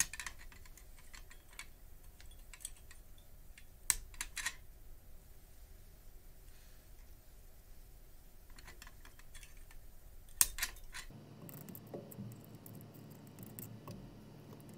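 Flush side cutters snipping the excess wire leads of soldered resistors and diodes on a circuit board: a few sharp clicks, the loudest about ten seconds in, among small ticks of handling.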